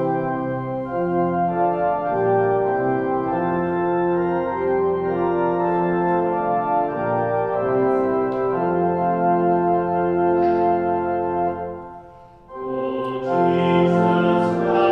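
Church organ playing a Welsh hymn tune in slow, sustained chords that change step by step. There is a brief break about twelve seconds in, and then the playing resumes.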